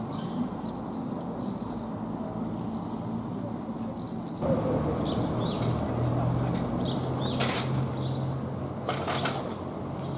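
Small-town street ambience: a steady low hum with a few faint bird chirps. The hum gets louder a little over four seconds in, and two short hissing noises come near the end.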